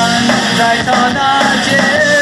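Live rock band playing loudly, with acoustic and electric guitars and a male voice singing over them.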